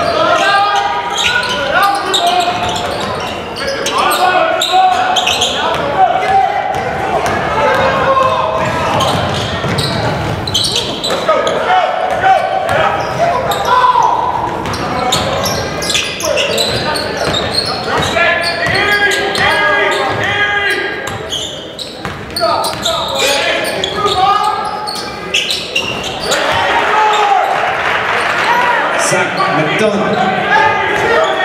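Live basketball play in a large gym: a ball bouncing on the hardwood floor amid steady shouting and chatter from players and spectators, echoing in the hall.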